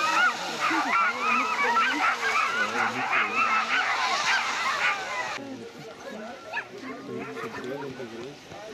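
Many sled dogs barking and yelping at once, a dense chorus of overlapping high calls. About five seconds in it drops sharply, leaving fewer, fainter barks and yips.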